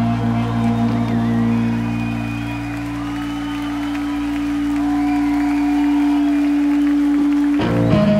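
Live rock band holding a sustained, droning chord with slow gliding high tones drifting over it, with some crowd applause; just before the end, a new rhythmic plucked guitar pattern starts.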